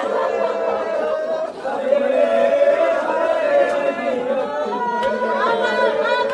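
A group of men chanting a noha (Shia mourning lament) together in long, drawn-out notes, with a couple of sharp slaps of matam, hands striking the body in mourning.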